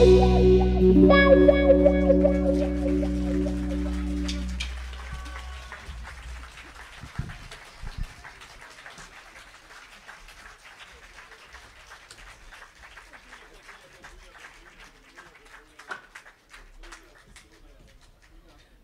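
Live band's final chord, electric guitar and bass held, ringing out and dying away over about five seconds as the song ends.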